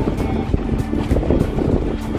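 Strong wind blowing in through an open window, buffeting the phone's microphone with an uneven low rumble. Background music plays underneath.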